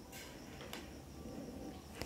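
Faint rustle of shirt fabric being handled and folded by hand, with a faint tick or two.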